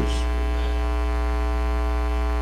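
Steady electrical mains hum with a buzzy stack of evenly spaced overtones, carried through the microphone and sound-system chain.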